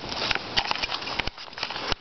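Handling noise from a handheld camera being swung about: a rustling rub with many small clicks and knocks.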